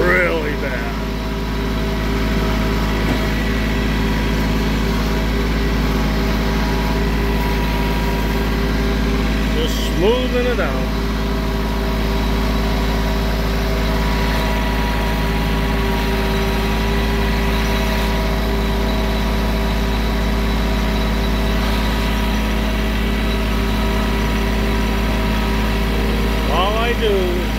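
Compact tractor's engine running at a steady speed while the tractor drives over a dirt driveway, heard close up from the operator's seat.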